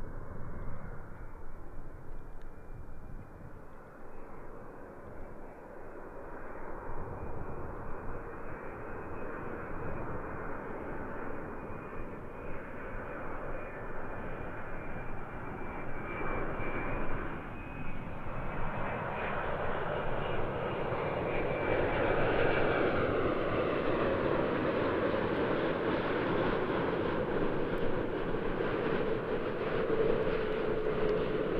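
Boeing 787-8 Dreamliner on final approach, its twin turbofan engines growing steadily louder as it comes nearer, with a thin high whine over the jet noise.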